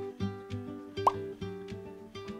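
Background music of plucked acoustic guitar in an even rhythm, with one short, rising pop just after halfway through.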